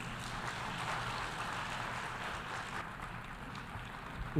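Audience applauding: many hands clapping in a steady patter that eases slightly near the end.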